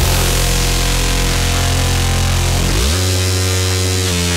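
Drum and bass track with a heavy, distorted bass that comes in suddenly at the start; about three-quarters of the way through, the bass slides up in pitch.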